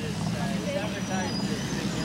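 Steady low hum of street traffic, with people talking faintly in the background.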